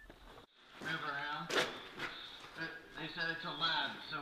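A man's voice talking, with the words not made out. There is a brief dropout about half a second in.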